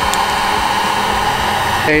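Electric heat gun running steadily, blowing hot air on a vinyl sticker to soften its adhesive for peeling; the blower noise cuts off suddenly near the end.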